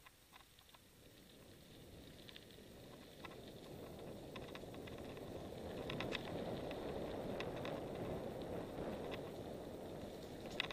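Mountain bike rolling down a dirt and gravel singletrack: a rough rolling rush of tyres and passing air that builds steadily louder as speed picks up, with scattered sharp clicks and rattles from the bike.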